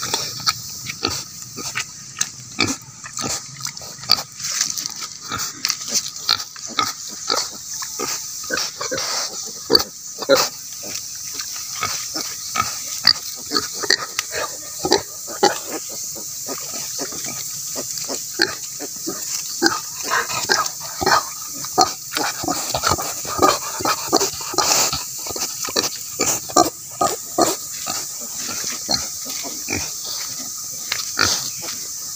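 Native pigs, a sow with her piglets, grunting over and over in short, irregular sounds while they forage in leaf litter, with a steady high hiss underneath.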